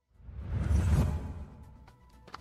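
Whoosh transition sound effect for an animated news logo. It is a single swell of rushing noise with a deep rumble underneath, building to a peak about halfway through and fading away.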